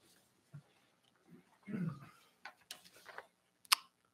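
Papers being handled at a desk: faint rustling and small clicks, with one sharper click near the end. A brief low murmur of a voice comes about two seconds in.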